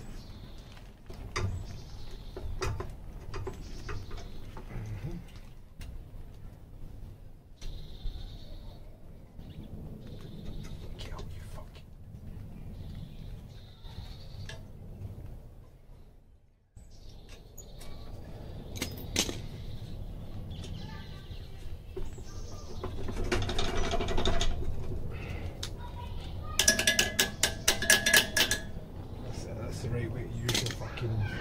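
Hand tools working on the metal tine shaft of a petrol garden tiller: scattered metallic clicks, clinks and knocks, with a burst of rapid, evenly spaced ringing metal clicks near the end.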